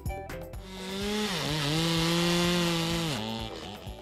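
Gasoline chainsaw running at high revs into wood. Its pitch dips briefly a little over a second in and falls to a lower speed near the end.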